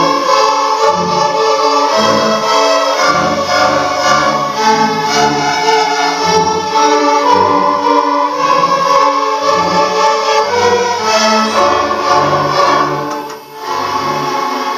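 Sixth-grade string orchestra of violins, cellos and double bass playing a square-dance tune, the low strings sounding separate bass notes under the melody. The music dips briefly near the end, then carries on.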